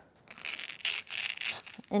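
Styrofoam ball rubbing and crackling as it is rolled and pressed under the palm against the tabletop to shape it into an oval. The sound is a scratchy run of small irregular crackles that starts after a brief quiet moment.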